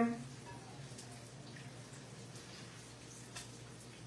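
Faint, steady sizzle of tacos frying in hot oil, with a couple of faint pops and a low hum underneath.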